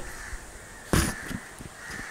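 A single sharp knock about a second in, followed by a few light clicks: the camera being handled and set down in a new position.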